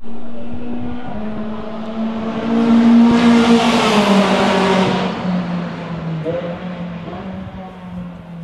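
A British Touring Car, a Ford Focus, passing on the circuit with its engine running at speed. The sound is loudest about three to four seconds in, then the engine note drops in pitch and fades as the car moves away.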